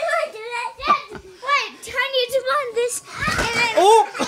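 Young children's high-pitched voices, babbling and calling out with no clear words.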